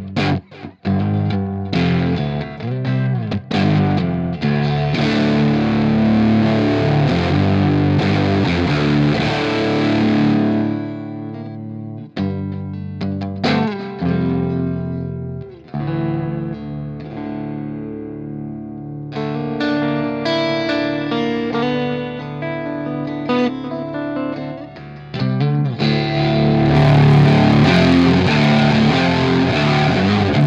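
Electric guitar played through fuzz distortion with a short, quick delay after the fuzz, heard as ringing chords and note phrases with a couple of brief pauses. The playing gets louder and brighter near the end.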